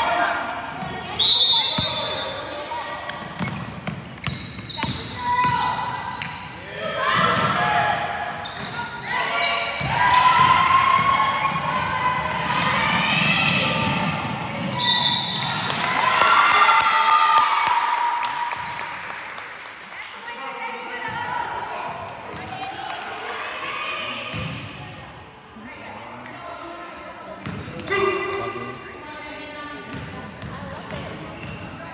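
Basketball game sounds in an echoing gymnasium: players and coaches calling out, a basketball bouncing on the hardwood court, and two short high squeaks of sneakers on the floor, about a second and a half in and again near the middle.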